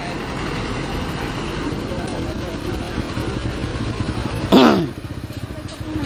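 A motorcycle goes by on the road, its engine noise building slowly over about four seconds. Then a person gives one short call that falls in pitch, the loudest sound here.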